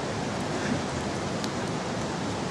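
Steady rushing outdoor noise with no words, and a single faint sharp pop about one and a half seconds in.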